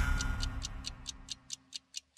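Clock-ticking sound effect of a TV programme's opening ident: a fast, even run of short high ticks, about four and a half a second, as the theme music before it dies away.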